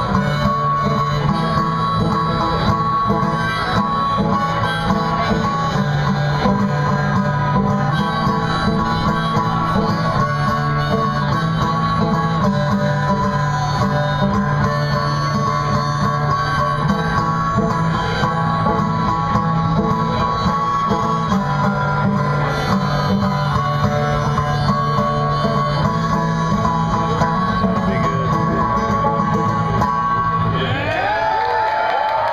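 Live solo banjo and harmonica instrumental: a banjo picked in a steady rhythm while a harmonica in a neck rack plays long held notes over it, without singing.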